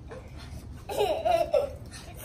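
A young girl laughing, one short, bubbly burst of giggling about a second in.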